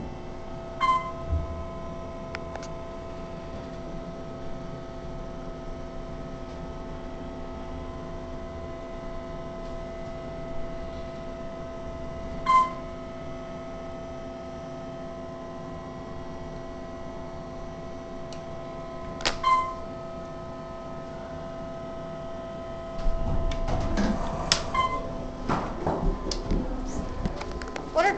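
Steady hum of several level tones from an Otis hydraulic elevator, heard inside the cab, with a few short bright pings spaced several seconds apart. Near the end louder handling noise and clicks come in.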